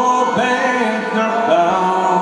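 Slow Irish folk ballad played live on acoustic guitar and concertina, with male vocals singing over the held chords.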